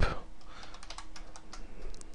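Typing on a computer keyboard: a quick, irregular run of separate key clicks.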